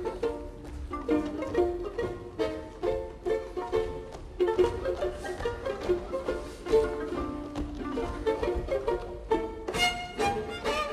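A string quartet of violins and cello playing a lively passage of short, detached notes.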